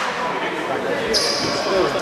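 Sounds of a basketball game in a sports hall: voices echoing around the hall, with a high steady tone coming in about a second in.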